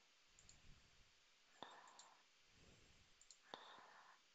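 Two faint computer mouse clicks, about two seconds apart, each followed by a brief soft rustle, against near-silent room tone.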